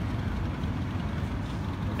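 City street traffic noise: a steady low rumble of passing vehicles.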